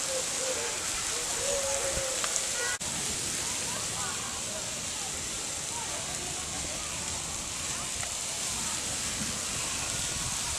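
Steady outdoor hiss with faint, indistinct voices mixed in, broken by a brief dropout about three seconds in.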